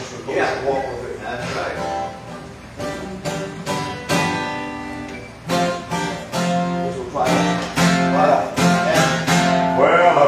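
Acoustic guitar strummed in chords, playing the introduction to a gospel song.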